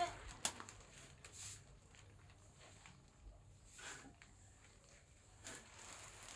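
Low shed room tone with a few faint, scattered knocks and rustles. At the very start the last moment of a calf's call cuts off.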